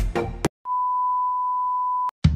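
Electronic dance music with a deep kick drum breaks off about half a second in. After a brief gap, one steady, pure test-tone beep sounds: the tone that goes with TV colour bars.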